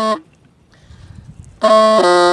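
Hmong raj bamboo flute playing a slow, mournful tune: a held note ends just after the start, a pause of about a second and a half, then a new loud, reedy held note begins near the end.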